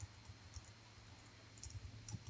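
Computer keyboard keys typing: a few faint clicks, mostly near the end, against near silence.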